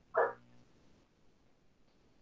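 One short, high-pitched call, about a quarter of a second long, just after the start, followed by quiet room tone.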